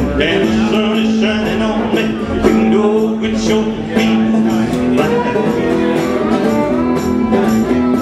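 Live acoustic string band of fiddle, strummed acoustic guitar and plucked upright bass playing a country-bluegrass tune at a steady beat.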